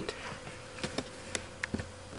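Faint room tone with a low steady hum and a few soft, short clicks scattered through it.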